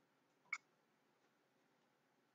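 Near silence, broken by one brief, sharp click about half a second in.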